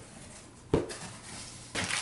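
A cardboard box being opened by hand: one sharp knock from the flap about a third of the way in, then rustling near the end as a plastic-bagged part is pulled out.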